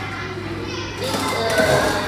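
Children's voices and chatter, getting louder in the second second, over a steady low hum.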